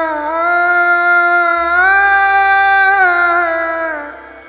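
A single voice sustaining one long sung note that slides down slightly, rises about a second and a half in, falls back near three seconds and fades away at the end, over a low steady bass tone.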